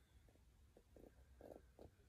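Near silence: room tone, with a few faint, short low sounds scattered through it.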